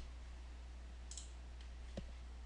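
A computer mouse clicks once, sharply, near the end. A steady low electrical hum runs underneath.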